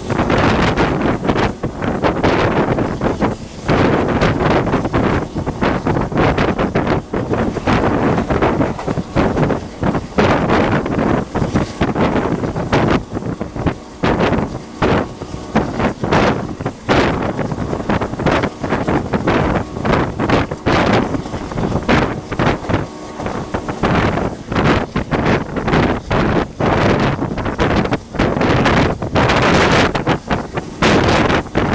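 Heavy wind buffeting the microphone at the open window of a fast-running passenger train coach, over the coach's running noise on the rails. An oncoming train passes on the adjacent track.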